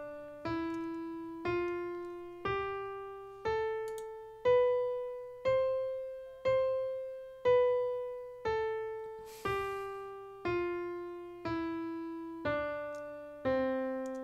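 A piano-like keyboard instrument plays a C major scale, one note a second, each note struck and left to fade. It climbs from E up to the high C, strikes that C twice, then steps back down the scale to the C an octave below.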